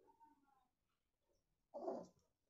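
Domestic cat hunting a mouse makes faint, brief calls, then one louder short cry near the end.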